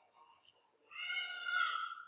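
A faint, high-pitched drawn-out cry, about a second long, starting about halfway in, its pitch drifting slightly upward.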